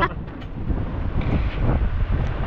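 Steady low rumble of wind buffeting the microphone on a fishing boat in rough seas, with the boat and water noise underneath.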